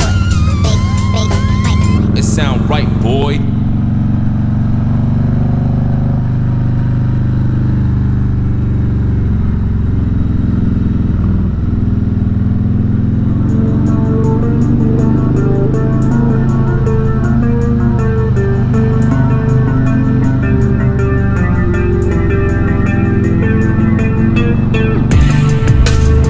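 A 2020 Harley-Davidson Electra Glide Standard's Milwaukee-Eight V-twin running at a steady cruise. Background music with a regular beat comes in about halfway through, over the engine.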